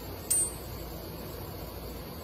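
A short, bright chime sound effect about a third of a second in, then a faint steady hiss.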